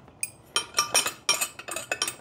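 Socket ratchet clicking and wrenches clinking on metal as 14 mm nuts are run down a threaded tray rod: a string of sharp, irregular clicks, several a second.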